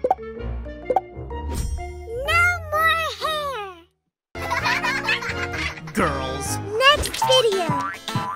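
Playful children's background music with springy cartoon 'boing' sound effects that wobble up and down in pitch, broken by a brief dead silence about four seconds in.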